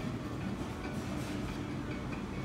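Steady low rumble of restaurant dining-room background noise, with a few faint light ticks.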